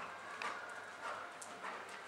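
Hoofbeats of a horse cantering on the sand footing of an indoor arena, a few soft, uneven thuds.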